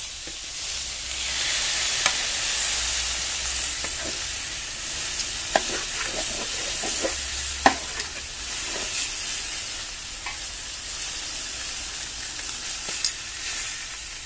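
Beef steaks and a sausage sizzling steadily on a hot aluminium baking tray heated by burning fuel alcohol, with a few sharp clicks of metal tongs against the tray as the meat is moved, the loudest a little past halfway.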